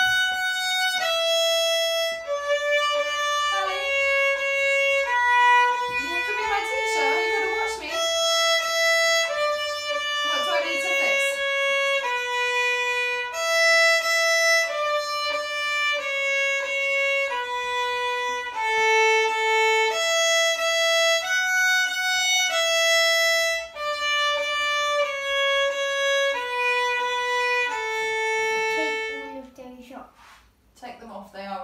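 A violin played with the bow: a simple melody of separate, evenly held notes, each a little under a second, moving stepwise up and down, stopping just before the end.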